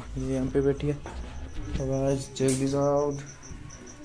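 A cricket chirping: a steady high pulsing note repeating several times a second, under a man's voice talking.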